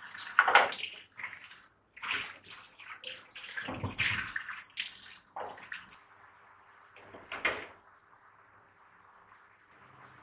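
Clear plastic container lids being set down on a stainless steel wire dish rack: a run of irregular clatters and knocks over the first six seconds, one more a second or so later, then only faint room hum.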